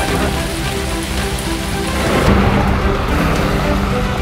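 Heavy rain falling steadily, a dense, even hiss, with background music of held notes playing over it.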